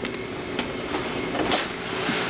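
Dot-matrix computer printer printing, a continuous mechanical rattle.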